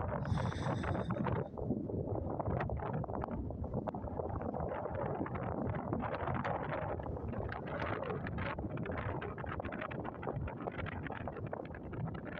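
Wind buffeting a phone's microphone at the water's edge: a steady noise with rapid crackle. There is a brief high sound in the first second.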